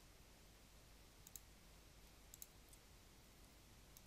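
Near silence with a few faint computer mouse clicks, two quick pairs about a second and two seconds in and a single click just after.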